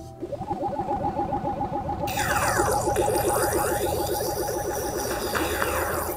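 A cartoon-style sound effect: a rapid pulsing warble with sweeping glides joining it about two seconds in.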